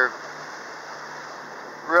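Steady rushing noise of wind and water aboard a sailboat under way through choppy water, with a faint low hum beneath it. A man's voice comes back in right at the end.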